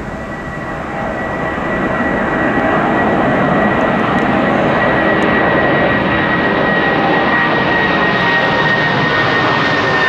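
A Boeing 747 jet airliner climbing out low overhead after takeoff from Heathrow, its four jet engines loud. The roar builds over the first couple of seconds, then holds steady, with a thin high whine running through it.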